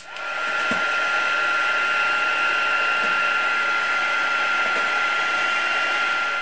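Craft heat gun switching on and running steadily, its fan rush carrying a steady high whine, as it heats puffy snow paint on a card so the paint puffs up.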